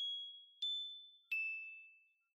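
Three high bell-like notes struck about two-thirds of a second apart, each ringing out and fading. The first two are at the same pitch and the third is lower. This is the quiet intro of a pop ballad, before the band and the singing come in.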